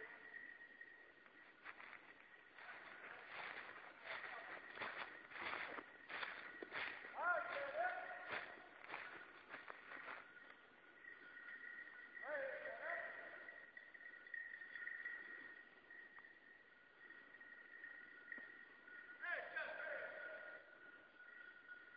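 Distant wordless hollers from a man, three calls that rise in pitch and are then held, about 7, 12 and 19 seconds in: a field-trial handler calling out to his bird dogs. Scattered knocks and rustles fill the first half.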